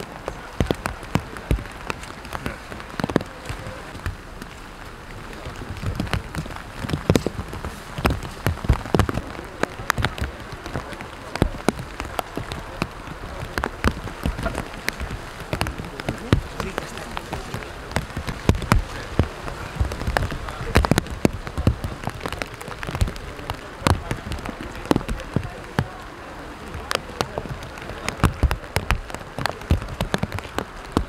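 Steady heavy rain falling on umbrellas and rain gear, with many sharp, irregular drop hits close by.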